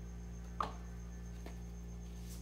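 A steady low hum with a single light click about half a second in, and a fainter tick later.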